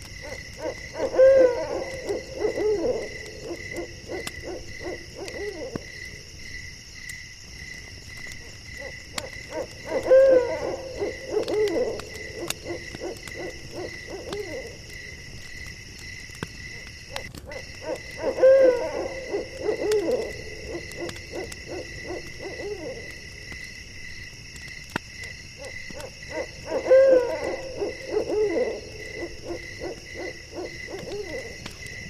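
An owl hooting in a phrase of several notes that ends in a falling note, each phrase lasting two to three seconds and repeated four times about eight seconds apart. Underneath is a steady high chirring of crickets.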